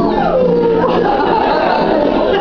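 A dog howling in long, gliding calls over background music.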